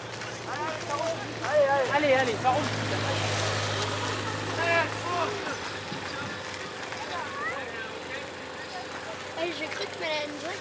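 Outdoor voices of people talking in snatches at a distance, over a low steady hum that stops about five and a half seconds in.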